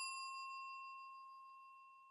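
The fading ring of a bell-like "ding" sound effect: one clear tone with thinner higher overtones, dying away steadily over about two seconds.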